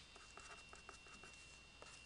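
Pen writing on paper, faint scratching strokes as figures are written out.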